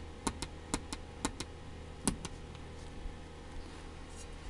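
Quick double clicks of the clock's small time-setting switches being pressed and released, about five presses at roughly two a second, stopping after about two seconds. A low steady hum lies under them.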